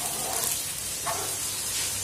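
Steady hiss from a kitchen stove heating a steel pot of spiced water.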